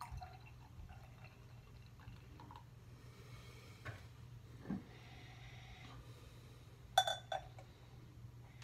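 Glass bottle and beer glass handling: a few small clicks, then near the end one sharp ringing glass clink as the bottle neck meets the rim of a tulip glass, with beer being poured from the bottle into the glass.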